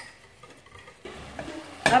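A steel pot of peas and onion-tomato masala sizzling on the hob, starting about a second in after a few faint spoon clinks, with a sharp knock against the pot near the end.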